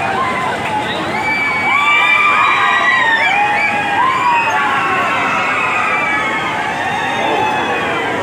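Ferris wheel riders shrieking and whooping together: many high voices overlap, rising and falling in pitch, over a steady hubbub of crowd noise. The shrieks are thickest in the first half.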